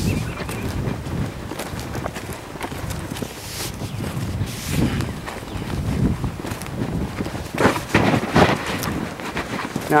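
Wind rumbling on the microphone over the soft footsteps of a man and a colt walking on grass, with a few louder scuffs and rustles about eight seconds in.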